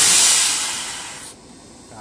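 A sudden loud hiss, like rushing air, that fades over about a second and then cuts off abruptly.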